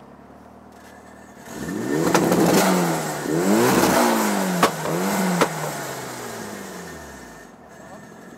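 Turbocharged, modified Mitsubishi Lancer revved through its aftermarket exhaust: idling, then three quick free-revs about a second and a half in, each rising and falling, with a few sharp pops from the exhaust. The revs then wind down to idle.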